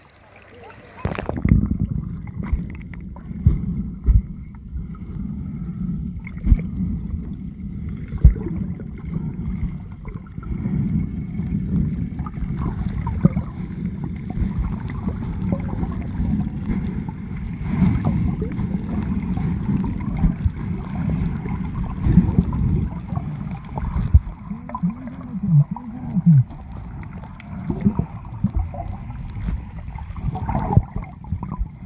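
Water sloshing and gurgling around a submerged camera: a muffled, low churning rumble with irregular knocks. About 25 seconds in come a couple of short muffled sounds that rise and fall in pitch.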